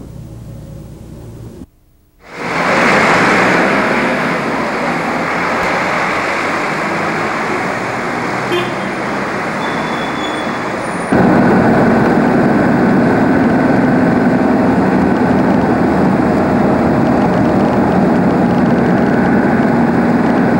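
Street traffic noise of passing cars, then, after an abrupt change about eleven seconds in, the steady road and engine noise of a car driving.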